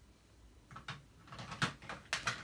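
A few light knocks and clacks of plastic toy kitchen pieces being handled and set down, starting about two-thirds of a second in, the loudest near the end.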